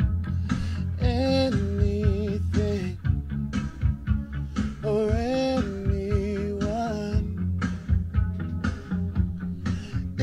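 A man singing over an instrumental backing track: a few long, wavering sung notes with pauses between them, over a steady low accompaniment.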